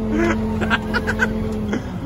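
A heavy machine's engine running steadily under load as it drags a vehicle by a chain, its steady note dropping away about three-quarters of the way through. Several short, high squeaks sound over it.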